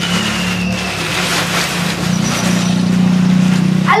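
A motor vehicle engine running nearby: a steady low hum under a rushing noise that grows louder in the second half.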